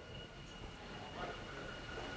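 Quiet room tone in a pause: a faint steady low rumble with a thin high hum, and a faint brief sound just over a second in.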